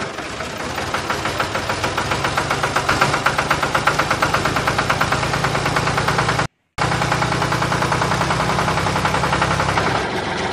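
Tractor-style engine chugging steadily at idle, with a regular knock at about eight beats a second. The sound drops out for a split second about six and a half seconds in.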